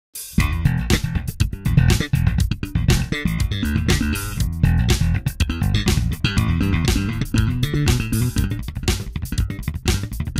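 Sadowsky MetroLine MV5-WL five-string electric bass strung with D'Addario ProSteels, played with the fingers in a quick, busy run of plucked notes that starts just after the beginning.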